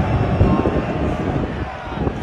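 Football stadium crowd during a penalty run-up: a loud, low rumble of many voices with nearby fans talking, dipping a little just before the kick.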